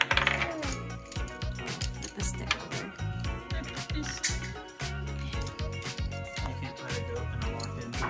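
Many quick light clicks and clatters of board-game pieces, goat figures and wooden raft sticks, being picked up and set down on a wooden table. Background music plays underneath.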